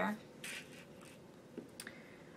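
Quiet room tone, with a short soft rustle about half a second in and two faint ticks near the end.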